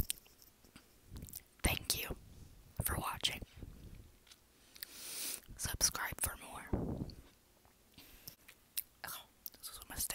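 Close-up whispering mixed with wet mouth clicks and lip smacks as fingers sticky with orange juice are licked.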